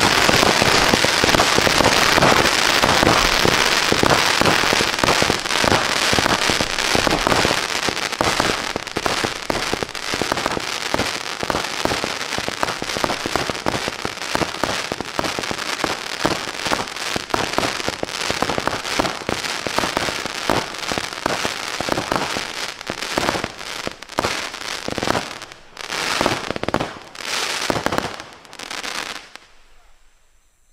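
A Winda 'Front Row Seats' 500-gram consumer fireworks cake firing its 60+60 shots: a dense, rapid stream of launches and bursting pops. It slowly weakens and thins to a few separate final bursts near the end as the cake finishes.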